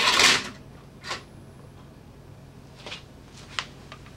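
A PASCO dynamics cart, pulled by a falling hanging mass, rolls fast along an aluminium track with a short loud rushing noise, then a sharp knock about a second in as it reaches the end of the track. A few light clicks follow.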